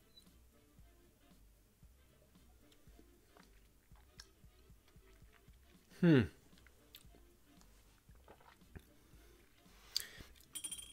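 Faint wet mouth noises of a person tasting a sip of whisky: small smacks and clicks as it is worked around the mouth. About six seconds in comes a falling, appreciative 'hmm', the loudest sound, and a short click near the end.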